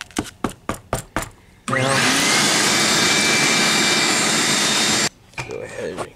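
A quick run of about seven light, sharp taps. Then a loud, steady rushing noise with a faint whine in it starts abruptly, runs for a little over three seconds and cuts off suddenly.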